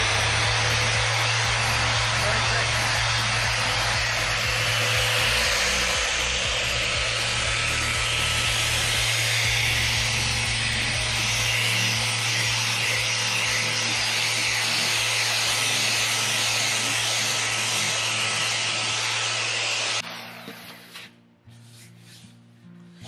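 Electric random-orbit sander with a polishing pad running steadily, buffing a coat of wax polish off a wooden slab; a steady whir over a low hum. It switches off abruptly about two seconds before the end.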